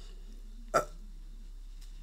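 One short, hesitant "uh" from a man's voice about three quarters of a second in, over a faint steady low hum; otherwise quiet.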